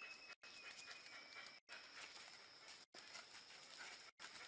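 Near silence: faint outdoor forest background hiss, broken three times by brief gaps of total silence.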